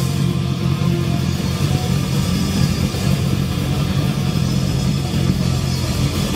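Live rock band's distorted electric guitars and bass holding a loud, dense droning wall of noise with no clear beat.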